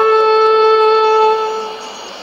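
The final held note of a radio promo's music, received as a shortwave AM broadcast from Radio Exterior de España on 7275 kHz through a Sony ICF-2001D's speaker. One steady pitch that fades out near the end.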